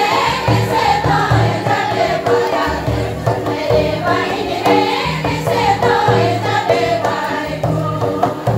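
Folk dance song sung in chorus by a group of voices, over a steady low beat that repeats about once a second.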